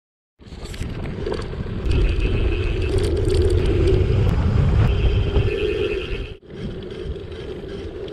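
Gravel bike rolling along a gravel road: steady tyre rumble and frame and camera-mount vibration. After a sudden break near the end it goes on quieter and smoother on asphalt.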